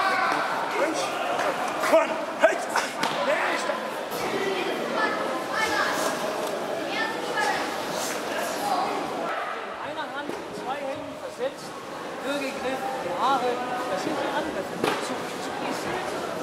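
Indistinct talk of many people echoing in a large sports hall, with two sharp thumps about two seconds in.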